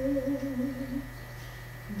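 A woman singing unaccompanied, holding the last note of a line on a wavering pitch that stops about a second in. After it only a steady low hum remains.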